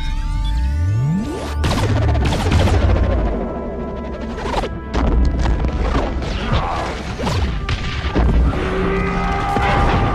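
Sci-fi space-battle soundtrack: a rising whoosh of weapon fire, then a string of sharp blasts and explosion impacts over dramatic film score.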